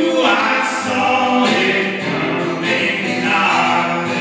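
Live acoustic folk music: a man singing a melody over strummed acoustic guitar and bowed or plucked cello.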